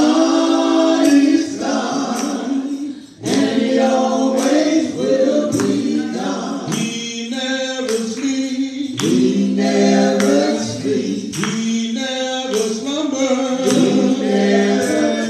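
A man leading a gospel praise song a cappella into a microphone, with other voices from the congregation singing along; the singing breaks off briefly about three seconds in.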